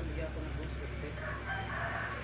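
A rooster crowing, starting a little over a second in, over a steady low rumble.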